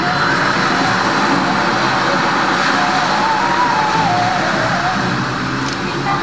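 Soundtrack of a sound-and-light show played over outdoor loudspeakers: a steady rushing noise under a single wavering melody line.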